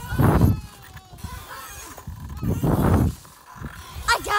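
Wind buffeting a handheld phone's microphone as a child swings back and forth on a swing, in two rushes about two and a half seconds apart.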